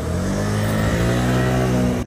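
A motor vehicle's engine accelerating close by, its pitch rising steadily, cut off abruptly at the end.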